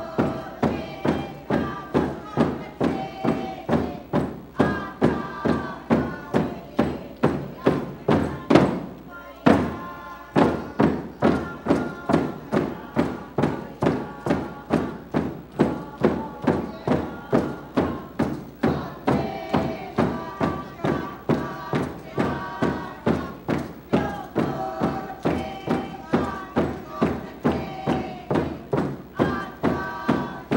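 Tlingit group singing with hand-held hide frame drums beaten in a steady pulse of about two strokes a second. About nine seconds in, a louder stroke comes, then the drums drop out for about a second while the voices carry on, and the beat resumes.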